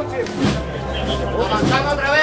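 Mostly voices: a man calling 'paso' and others talking, with brass-band music playing faintly underneath.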